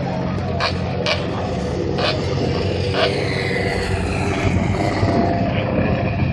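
Steady low drone of engines idling near a drag strip, with a few brief high squeaks.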